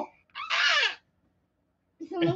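A young girl's short, high-pitched squeal, once, falling in pitch over about half a second.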